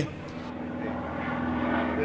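Light propeller aircraft engine running with a steady drone that grows slightly louder.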